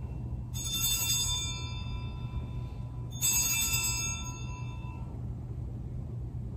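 Altar (sanctus) bells rung twice, each ring a bright cluster of high chiming tones that fades over about two seconds, marking the elevation of the host at the consecration.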